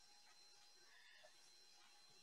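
Near silence: the video call's audio gated out, leaving only a faint steady hum.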